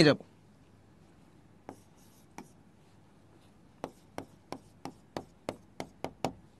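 Short sharp taps on a touchscreen drawing board as small marks are drawn one after another: two single taps, then a run of about three taps a second in the second half.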